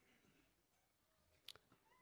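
Near silence in a pause of the preaching, broken by one brief sharp click about one and a half seconds in.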